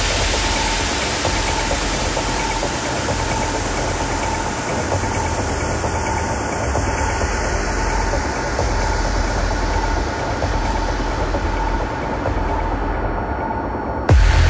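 Beatless breakdown in a techno DJ mix: a dense, rumbling noise wash with a steady tone running through it, the kick drum absent. The highs fade out near the end.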